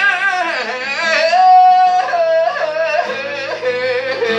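A man singing a Zulu hymn in a high voice, his pitch sliding up and down, with one long held note about halfway through, over acoustic guitar accompaniment.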